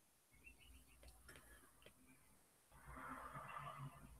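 Near silence: faint room tone with a few soft clicks, and a slightly louder faint hiss near the end.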